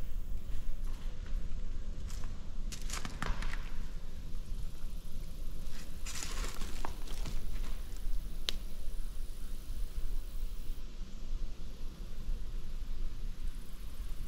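Footsteps crunching and rustling over scattered debris and brush, with crackly clusters about three and six seconds in and one sharp snap a little past the middle, over a steady low rumble.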